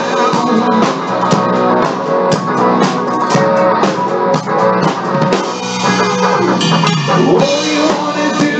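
Live band playing an instrumental stretch of a soul-blues cover: a drum kit keeps a steady beat under electric guitar and bass. The recording is low-fidelity, with the top end cut off.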